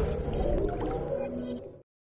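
Closing notes of a channel logo jingle: sustained synthesizer tones fading out, then cut off to silence near the end.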